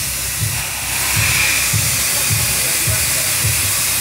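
Steady hissing background noise with an uneven low rumble.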